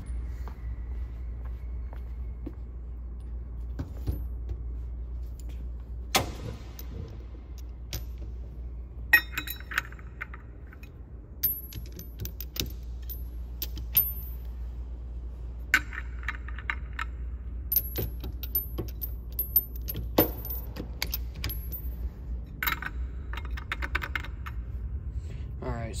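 Steel sockets and a ratchet being handled and fitted onto a ceiling fan motor's nut: scattered metallic clinks and clicks over a low, steady hum.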